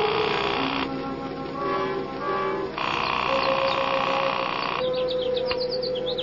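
Sustained music bridge of held, steady tones that swell twice, with small birds chirping in from about five seconds in.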